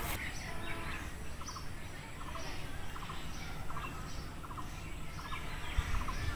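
Birds calling outdoors: a short rattling call of three or four quick notes repeated a little faster than once a second, with fainter high chirps in between.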